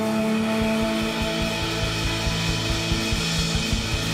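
Live worship band music: a drum kit plays rapid hits with a building cymbal wash over sustained keyboard and guitar chords.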